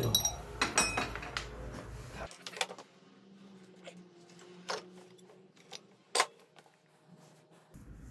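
Metal hand tools and scooter transmission parts clinking as they are handled: a quick run of clinks in the first two seconds, then a few single clicks, one sharp one about six seconds in.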